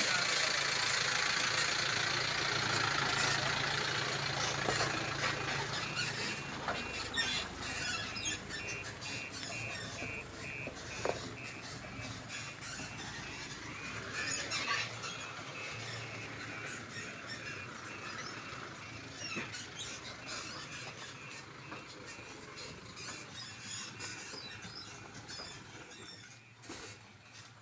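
Tipper truck working its way along a rough dirt track, its running and a high squeal growing steadily fainter as it moves off. A regular high-pitched pulsing sounds for a stretch in the middle.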